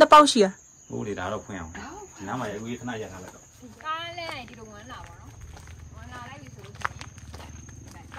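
A woman's voice talking in short phrases, with an exclamation about four seconds in. A thin, steady, high-pitched insect drone runs underneath.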